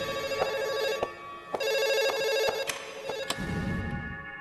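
A telephone ringing: two rings about a second long with a short break between them.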